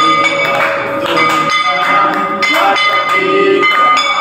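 Temple bells rung repeatedly during an aarti, each strike leaving a ringing tone that hangs over the next, with people's voices underneath.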